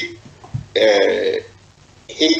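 A person's voice making one drawn-out, voiced hesitation sound, about two-thirds of a second long, between pauses in speech.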